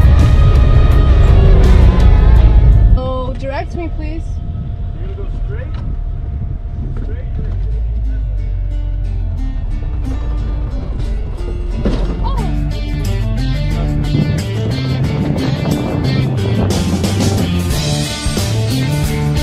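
Background music. It drops suddenly to a quieter passage about three seconds in, then builds again with a stepping bass line in the second half.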